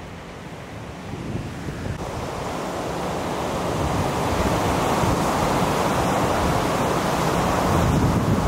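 Heavy storm surf breaking: a steady rushing roar of waves that grows gradually louder over the first few seconds and then holds, with wind rumbling on the microphone underneath.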